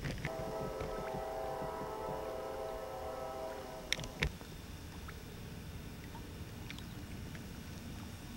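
Wind rumbling on the microphone by open water. For the first half a steady droning hum of several tones sounds, then cuts off abruptly just after two sharp clicks.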